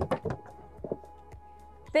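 Quiet background music, with one sharp click near the start as the outboard engine's cowling latch releases and the cowling is pulled off.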